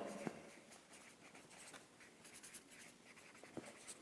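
Felt-tip marker writing on flip-chart paper: a faint run of short, irregular scratchy strokes.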